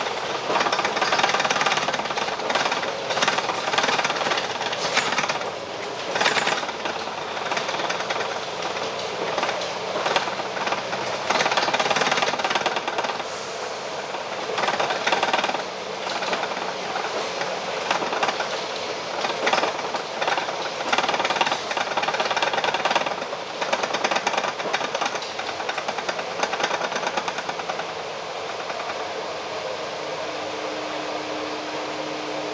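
Interior of a Volvo Olympian double-decker bus on the move: loud running noise with irregular rattling and clattering from the body and fittings, settling into a steadier noise near the end.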